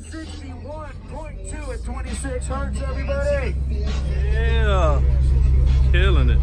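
Car audio subwoofers playing a low, steady bass note that grows steadily louder, with people's voices over it.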